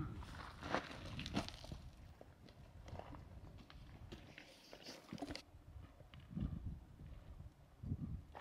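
Footsteps on rocky, gravelly desert ground, irregular and fairly quiet.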